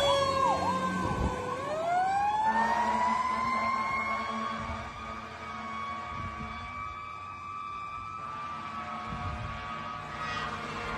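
Fire apparatus siren on Middlesex County hazmat truck HM-5: a fast warbling yelp that dies out in the first second, then a slow rising wail from about a second and a half in that levels off and holds. The sound grows fainter as the truck drives away.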